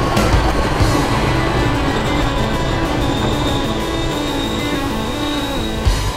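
Loud ride soundtrack music playing over the low rumble of a moving theme-park ride vehicle.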